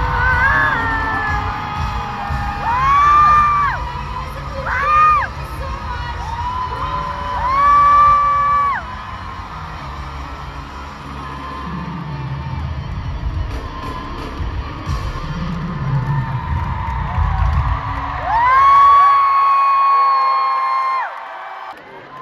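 Live arena concert sound: a crowd cheering and screaming over music from the PA. Long high voice notes are held several times, the longest near the end. The low rumble of the sound system fades out a few seconds before the end, and everything drops away at the very end.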